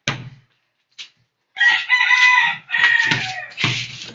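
A loud, drawn-out high-pitched call lasting about a second, starting about a second and a half in, followed by a shorter one. A ball thuds on a concrete floor at the start and again near the end.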